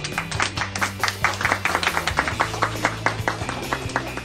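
A few people clapping their hands in quick, separate claps that start suddenly and thin out near the end, over background music with steady low notes.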